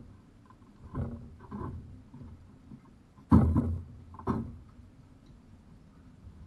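Handling knocks and thuds as the top cowling of an outboard motor is carried off and set down on the boat deck. There are a few dull bumps early on, then a loud sharp knock about three seconds in, and a smaller one a second later.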